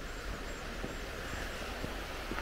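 Steady outdoor background of a shallow river running over stones beside the path, with low wind rumble on the microphone and a few faint footsteps on gravel.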